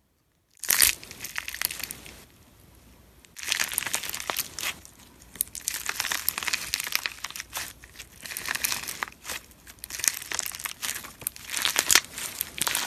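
Clear slime packed with polymer clay (fimo) lemon slices being squeezed and pulled apart by hand: dense crunching and crackling. It starts about half a second in, dies down for about a second, then runs on busily.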